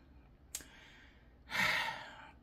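A woman's sigh: a breathy exhale about a second and a half in, after one short click.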